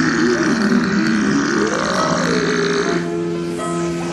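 Music with a long, burp-like guttural sound laid over it. Its pitch wavers, rises to a peak about two seconds in and falls, and it stops about three seconds in, leaving the steady music tones.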